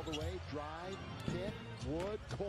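Basketball broadcast audio playing under the stream at a lower level: a play-by-play commentator talking over arena noise, with a basketball bouncing on the hardwood court.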